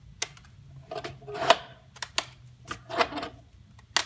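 Irregular clicks and wooden knocks as a wooden clamping jig is handled and its screw clamps are tightened around a glued-up box, the strongest about a second and a half in.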